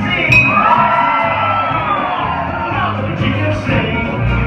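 Live country band with upright bass and acoustic guitar playing, with singing; a long drawn-out vocal note runs through the first half.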